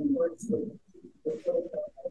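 Indistinct, muffled voice talking in the background of a video-call audio feed, in short irregular bursts with no clear words.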